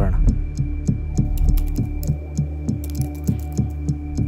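A low, humming sound-design drone pulsing about four times a second like a heartbeat, with the quick clicks of typing on a laptop keyboard over it from about a second in.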